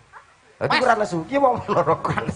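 A man's loud, animated voice through a stage microphone, starting about half a second in after a short pause, its pitch swooping up and down.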